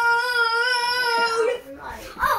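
A young girl's voice holding one long, high, steady sung note without words, which ends about one and a half seconds in.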